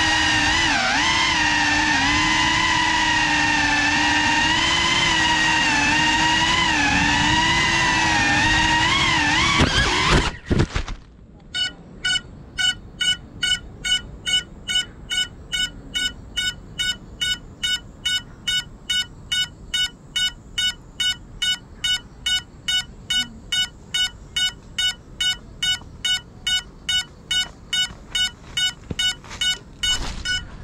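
FPV quadcopter's brushless motors whining, the pitch wavering with throttle, then cutting off abruptly about a third of the way in as the drone crashes into bamboo. After a short quiet spell the downed drone's lost-model beeper beeps steadily, about two beeps a second.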